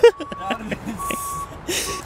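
A short burst of laughter, then faint voices, with a high steady beep sounding on and off in the background and two short scuffs in the second half.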